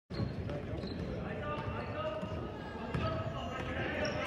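Basketball game on a hardwood gym court: a ball being dribbled and sneakers thudding on the floor, under indistinct voices of players and spectators.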